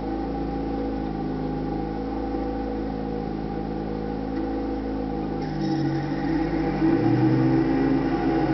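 A 2007 MTD Yard Machines 20 HP riding lawn mower's engine running steadily; about five and a half seconds in its note shifts and it gets louder as the controls on the dash are worked.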